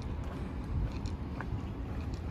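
Footsteps on a stone-paved path, a run of short crisp clicks, over a steady low outdoor rumble.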